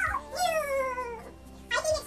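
A person's voice in one drawn-out, whining call that slides steadily down in pitch for under a second, with short bursts of voice just before and after it.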